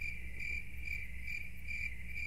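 Crickets-chirping sound effect, the stock gag for an awkward silence: a steady high chirping trill that pulses about three times a second.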